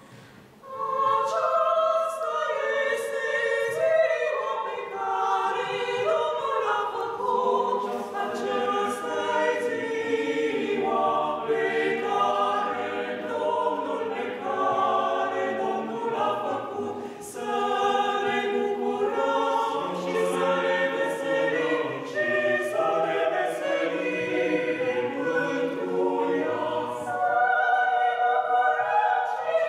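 A small mixed choir of men's and women's voices singing a cappella under a conductor. There is a short pause at the very start, then a continuous sung passage.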